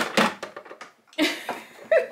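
Hard plastic toy parts clicking and knocking as the toy jet's cockpit pod is set down on a turntable, followed by more plastic clatter and handling noise, with a brief vocal sound near the end.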